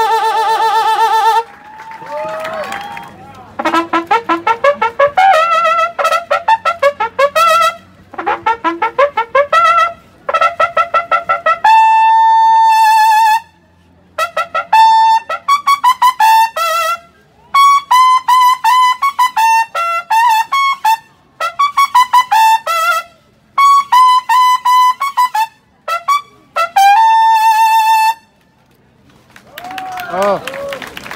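Mexican corneta de órdenes (military bugle) playing a solo run of bugle calls. It opens with a long held note, then plays phrases of fast, crisply tongued repeated notes with short breaks between them, and ends on a held note near the end.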